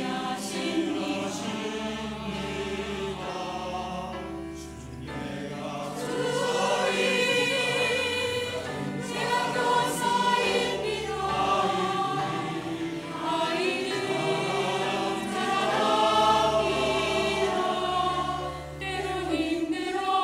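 Mixed church choir of men's and women's voices singing a Korean anthem in parts, with instrumental accompaniment holding low sustained notes. The singing swells louder about six seconds in and again a little past the middle.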